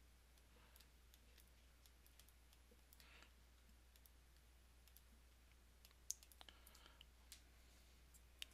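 Near silence: a faint steady low hum with a few faint clicks of a stylus tapping a drawing tablet as digits are handwritten, most of them between about six and seven and a half seconds in.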